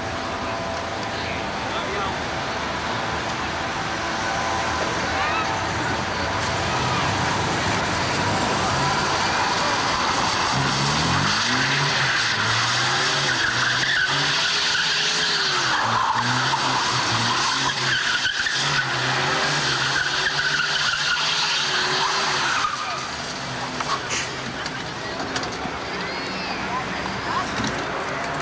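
Car engine revving and dropping repeatedly as the car is driven hard through a gymkhana course, with tyres skidding; it grows loud about ten seconds in and cuts off suddenly a few seconds before the end.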